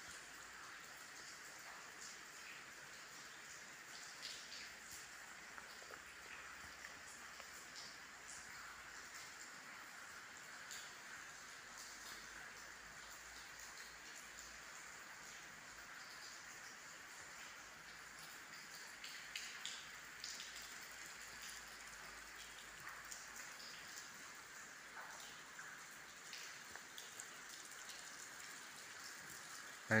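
Faint, steady light rain falling outside, heard from inside a stone building, with scattered drops.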